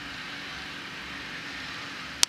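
Steady background noise with a faint low hum running under it, unchanging throughout.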